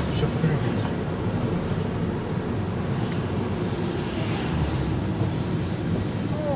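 Steady engine and road rumble heard inside a moving car's cabin, with tyre noise from a wet, slushy road.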